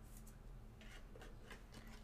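Faint light clicks and rustles of a trading-card box being opened and a cased card lifted out, over near-silent room tone.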